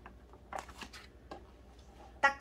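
A picture-book page being turned: two soft paper rustles, about half a second and a second and a third in, over a faint low hum.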